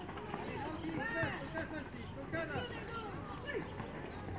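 Several voices of spectators and players calling and shouting over one another at a youth football match, with no single voice standing out. There is one sharp knock about a second in.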